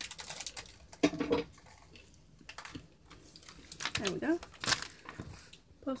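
Light handling sounds at a tabletop: a few soft rustles and small clicks as a paper towel is worked against a gingerbread house, with two short bits of voice, about a second in and about four seconds in.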